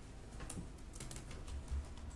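Faint, irregular clicking of laptop keys being typed.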